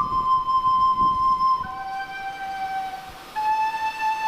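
Soprano recorder playing a slow melody of long held notes: a high note held for about a second and a half, then a lower note, and a brief breath before a slightly higher note near the end.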